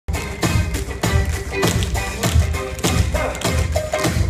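Music with a steady, bass-heavy beat, mixed with the sharp clicks of tap shoes from a group of tap dancers striking the stage floor.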